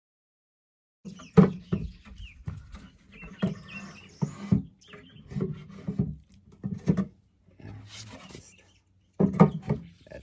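Dead silence for about a second, then a run of knocks and taps of wood on wood as the Flow Hive 2's wooden gabled roof is set down and worked into place on the hive box, with animals calling in the background.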